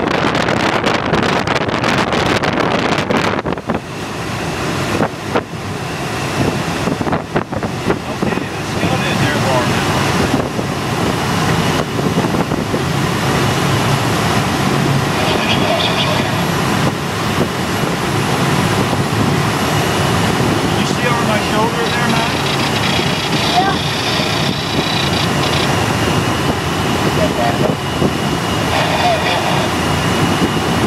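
Wind and airframe noise in a glider during a towed takeoff: knocking and rattling over the first few seconds while still rolling on the runway, then a steadier rush of air once airborne and climbing.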